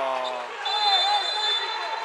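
Steady high-pitched whistle held for about a second and a half over gym crowd noise, the signal for a timeout called by a coach.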